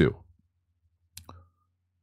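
The end of a spoken word, then near silence broken by one short, sharp click a little over a second in.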